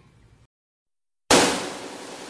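Silence, then about a second in a single sudden loud bang-like hit that dies away slowly.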